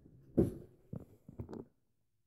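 A sharp knock and then a few lighter clunks as a small wooden, glass-topped display case is picked up and handled.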